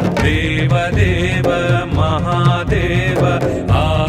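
Devotional song: a voice singing a wavering melody over instrumental backing with a steady beat.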